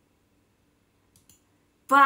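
Two faint clicks about a second in. Just before the end, a woman starts singing a loud, held 'baan' on one steady note, like a jingle.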